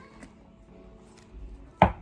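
A deck of cards knocked once on the tabletop, a single sharp tap near the end, with faint steady background music.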